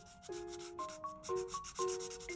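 Marker tip rubbing on paper in quick, short scratchy strokes as brown hair is coloured in. Gentle instrumental background music plays under it, its notes changing about twice a second.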